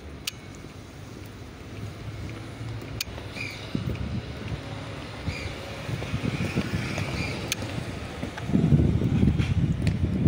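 Footsteps of a woman walking close past, with a few faint scuffs and clicks over a low, steady outdoor hum. A louder rush of noise sets in near the end.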